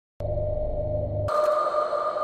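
Electronic intro sting of sustained synthesizer tones. A steady mid tone over a low hum starts just after the beginning. A higher tone joins suddenly a little past one second in as the low hum drops away.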